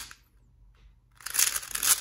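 Plastic 3x3 speed cube being turned fast by hand: clicking layer turns trail off at the start, a short pause, then a quick run of turns fills the last second or so.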